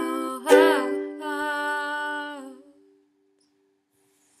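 Closing chord of a song: a ukulele strummed once and left ringing under a voice holding the final note. Both fade out before three seconds in.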